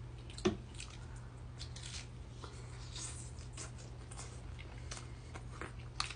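Close-miked chewing of a bite of chicken quesadilla: a run of small clicks and crunches, the sharpest about half a second in, over a steady low hum.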